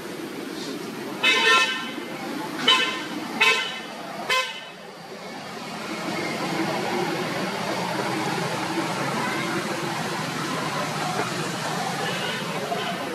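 A vehicle horn toots four times in quick short blasts, each at a steady pitch, the first slightly longer. From about six seconds in a steady rumble follows.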